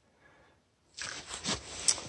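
Handling noise: rustling and scraping of hands and parts against the camera and gear, starting about halfway through, with a few sharp clicks, the loudest just before the end.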